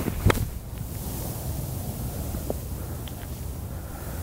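A single sharp click of a wedge striking a golf ball off a tight fairway lie, about a third of a second in, heard from a distance. Steady wind rumbles on the microphone after it, with a faint tap midway.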